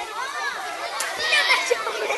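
A group of young children talking and calling out at once, many high voices overlapping.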